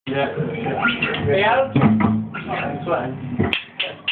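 People talking in a rehearsal room. Near the end come a few sharp, evenly spaced clicks about a third of a second apart, a drumstick count-in.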